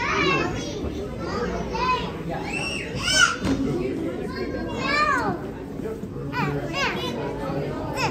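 Young children's high voices calling out and squealing over the chatter of a crowd, in a string of short rising-and-falling cries.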